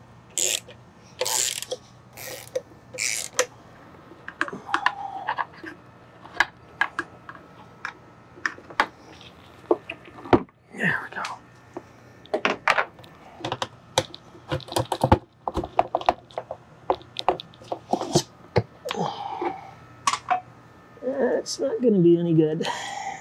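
Hand tools clicking and clinking against the metal of an outboard motor's lower unit, in irregular sharp clicks and knocks while a seized, corroded bolt is worked on. A few short hissy bursts come in the first few seconds.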